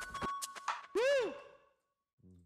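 Background music whose plucked or mallet notes end about half a second in, followed by one short tone that glides up and back down, like a vocal 'ooh' effect. The sound then cuts off to silence shortly before the end.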